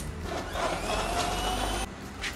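Electric blender motor running, its whine rising slightly in pitch as it works, cut off abruptly near the end.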